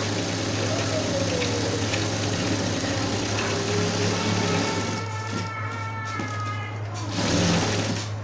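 Electric sewing machine stitching in a fast, steady run through a thick looped fabric rug, with a steady motor hum underneath. The stitching eases off for a couple of seconds after about five seconds in, leaving the motor hum and a faint whine, then picks up briefly near the end.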